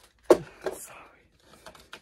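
A single sharp knock as a small object is knocked over, with a short spoken "sorry" and light handling noise after it.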